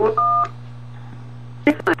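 A single short telephone keypad tone, two notes sounding together for about a third of a second, on an answering-machine recording over a steady low hum. Near the end, clicks and a voice begin the next message.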